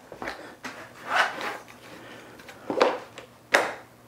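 ToughBuilt tool pouch being clipped onto a tool belt: rustling of the pouch and a few sharp plastic clicks, the sharpest near the end as the clip latches.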